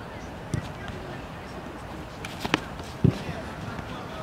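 A football being worked with the foot on artificial turf: a few dull thumps of foot on ball, the loudest about three seconds in.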